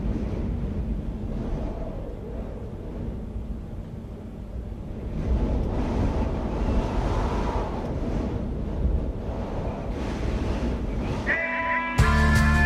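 Noise-like wash that sounds like wind and surf at the opening of a recorded music track, swelling about five seconds in; pitched instrumental music comes in just before the end.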